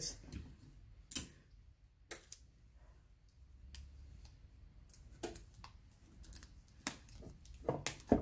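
Sparse light clicks and taps as hands handle heat tape and sublimation paper: a strip is taken from a desk tape dispenser and pressed down along the paper's edges. The loudest clicks come about a second in and near the end.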